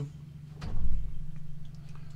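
A dull, low thump about half a second in, over a steady low hum.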